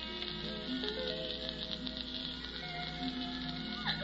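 Soft orchestral music bridge of slow, held notes changing in pitch, under a steady hiss.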